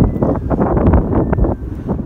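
Wind buffeting the camera's microphone, a loud, rough, low rumble.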